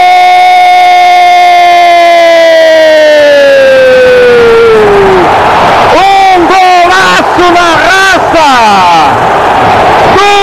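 A football commentator's drawn-out goal shout of "gol", one long held note sliding slowly down in pitch until about five seconds in. It is followed by a string of shorter excited shouts, with stadium crowd noise beneath.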